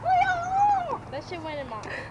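A long meow lasting nearly a second, rising in pitch, held, then falling away, followed by a few shorter gliding cries.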